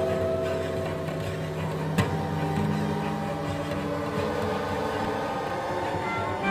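Contemporary electroacoustic music: a sustained drone of several held tones over a low hum, slowly thinning out, with one sharp click about two seconds in.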